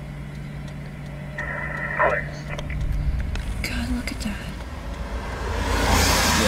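Low rumble of a vehicle with a steady hum that stops about halfway. A brief burst of faint radio chatter from a scanner comes about a second and a half in, and a rising rush of noise builds near the end.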